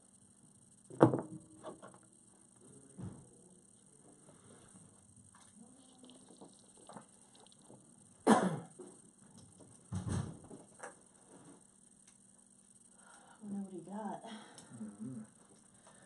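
A few sudden knocks and thumps, the loudest about a second in and another just past eight seconds, with a quieter one near ten seconds; low voices murmur near the end.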